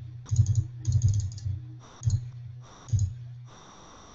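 Computer keyboard keystrokes and clicks in four short bursts over about three seconds, then a pause.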